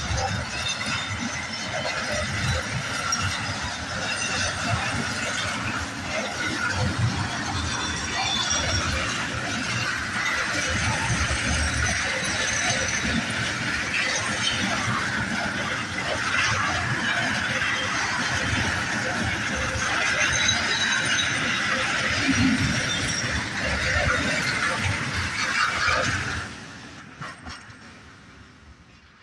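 Freight train of open box wagons rolling slowly past, the wagons' wheels squealing high and metallic over a steady rumble of wheels on rail. The noise falls away suddenly near the end as the last wagon goes by.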